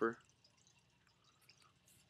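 A folded paper card being handled and opened in the hands, heard only as faint, scattered small ticks and rustles.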